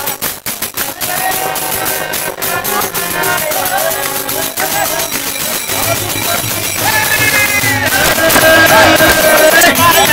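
Harmonium and tabla playing devotional music, with hand claps and voices singing along; the music gets louder in the second half.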